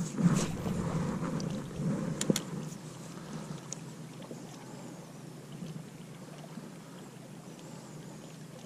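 Quiet boat-side ambience on the water: a low steady hum with a few light clicks and knocks in the first few seconds as the spinning rod and reel are handled.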